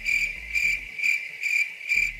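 Cricket chirping: a steady high-pitched chirp pulsing evenly about three times a second. It starts and stops abruptly with the scene cut, as an added sound effect.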